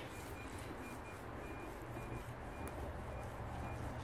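Faint, short beeps at one high pitch from a Garrett AT Pro metal detector, repeating irregularly as the coil sweeps a strong target under a log, over a low steady background hiss.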